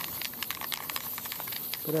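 Aerosol can of Army Painter primer spraying in a steady hiss as it is swept back and forth over miniatures, with a few faint clicks.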